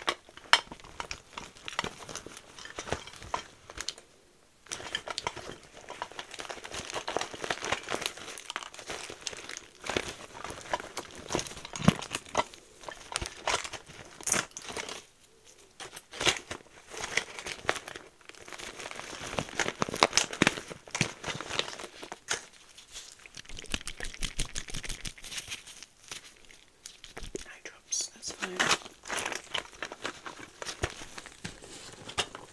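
A clear plastic pouch crinkling and crackling as gloved hands turn it over, with frequent sharp clicks from the small items packed inside, picked up close to the microphone.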